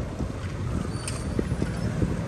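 Wind buffeting the microphone of a camera on a moving bicycle, a steady low noise mixed with tyre and street noise, with a faint click about a second in.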